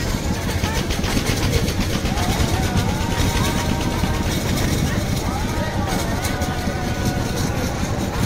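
Fairground ambience: a steady low rumble with the distant voices of a crowd over it.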